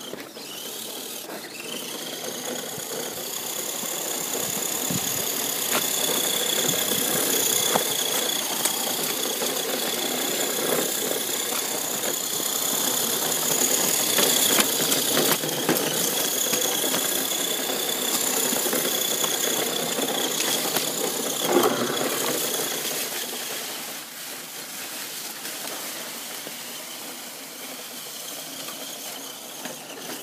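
Electric motor and gear drivetrain of an Axial SCX10 RC scale crawler whining steadily as it drives, over a rough rolling noise. The whine swells from a couple of seconds in, with one sharp knock about two-thirds through, and drops back near the end.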